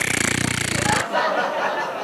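A man blowing a loud, buzzing raspberry into a handheld microphone for about a second as a vocal sound effect for mud spraying, followed by soft laughter.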